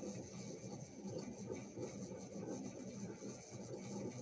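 Faint, irregular rustling and rubbing of hands handling a black cord with a hagstone hanging from it, over a steady faint hum.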